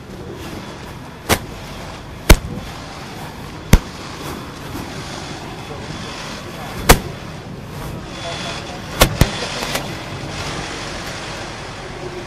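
A series of six sharp, loud clacks of hard objects striking, spread unevenly, with the last two close together, over a steady outdoor background hum.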